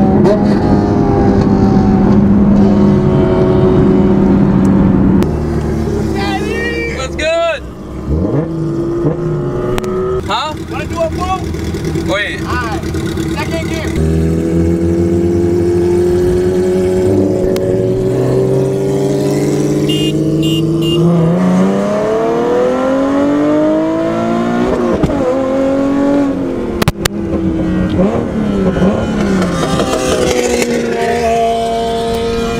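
Nissan 370Z's V6 engine heard from inside the cabin through an aftermarket exhaust, running steadily while driving, then pulling up through the revs in a long rising note in the middle. A sharp click sounds near the end.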